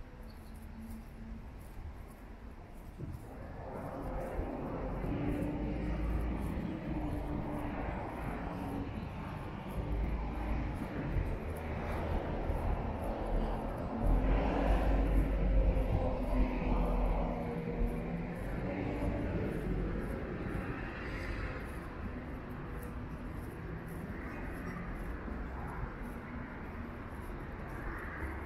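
Road traffic on a city street: vehicles passing in a steady rumble that builds a few seconds in and is loudest about halfway through.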